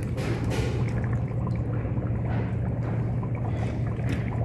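Thick brown sauce poured in a thin, steady stream from a steel tumbler onto a dessert dome sitting in a fogging dry-ice bowl, with a continuous trickle.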